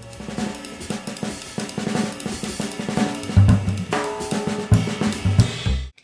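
Jazz trio music with the drum kit to the fore: cymbals washing and many quick drum strokes, with several heavy kick-drum hits in the second half and pitched notes beneath. It cuts off suddenly just before the end.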